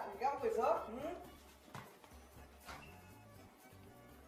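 A voice speaking briefly for about the first second, then faint background music with a couple of light clicks.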